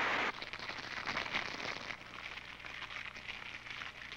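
Solid-propellant rocket motor firing: its steady roar cuts off sharply about a third of a second in, leaving a fainter crackle that fades away.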